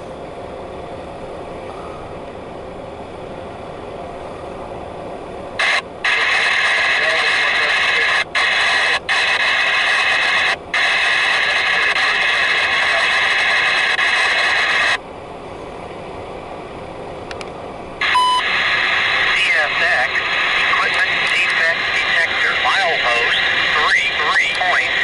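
Radio scanner hissing with harsh static that switches on and off abruptly: one long burst from about six to fifteen seconds in, broken by three brief dropouts, and another starting with a click at about eighteen seconds.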